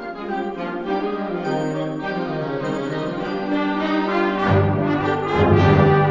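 Concert band playing a march, with brass holding sustained chords. Low brass come in about four and a half seconds in, and the music grows louder.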